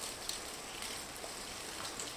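Soft, steady rain-like hiss with faint scattered ticks of drops.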